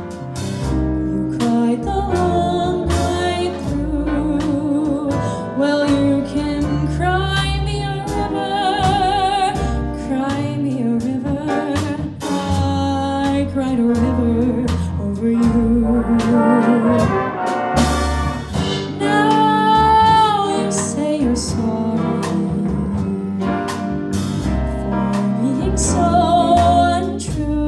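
A jazz big band plays a slow torch-song ballad behind a female jazz vocalist, who sings long notes with vibrato. Saxophones and brass sustain chords over an upright bass.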